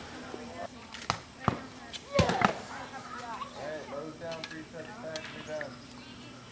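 Sharp snaps from youth bows being shot: single snaps about one second in, and a louder cluster of several about two seconds in. Children's voices are faint in the background.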